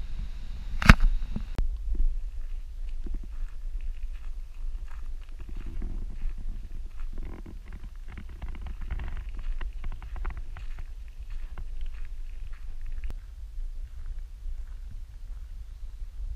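Low rumble and scattered crunching of a vehicle rolling along a gravel road, with one sharp knock about a second in.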